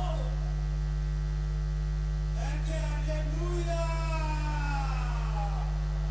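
Steady electrical mains hum, a low drone that is the loudest thing throughout. A faint voice is heard in the background for a few seconds in the middle.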